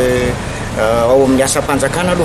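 Speech only: a man talking, with a drawn-out vowel at the start and a short pause before he carries on.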